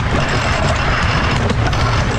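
Wooden side-friction roller coaster car running along its track, a steady rumble and rattle of the wheels on the rails, with a sharp knock about one and a half seconds in.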